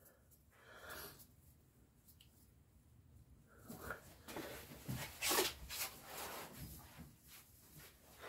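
Faint rustling and light handling knocks as a cloth rag is tucked under the oil filter housing in a car's engine bay, starting a few seconds in after near silence.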